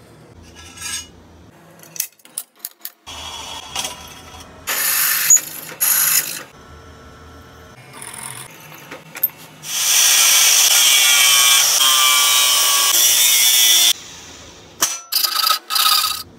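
Drill press bit cutting into a small square metal tube clamped in a vise: short bursts at first, then a steady cut for about four seconds, the loudest part. A few short clicks and knocks of metal parts being handled come before it.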